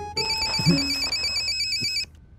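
Mobile phone ringing with a fast warbling electronic ringtone, which cuts off suddenly at the end as the call is answered.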